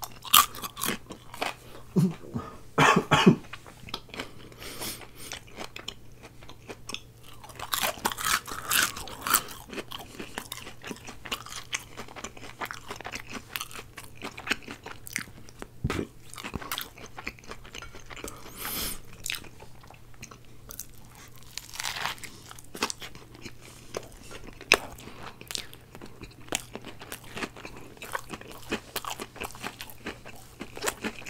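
Close-miked chewing and crunching of curly fries and a spicy chicken sandwich, with crisp bites and mouth sounds. The loudest bursts of crunching come near the start, about eight seconds in and again about twenty-two seconds in.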